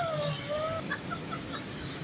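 Indian ringneck parakeet calling: one drawn-out, whistle-like call that slides down in pitch, followed about a second in by a few short chirps.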